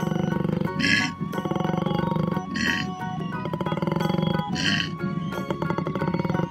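Koala bellowing: long stretches of low, rapidly pulsing, belch-like grunts, broken three times by short hissing sounds, over background music.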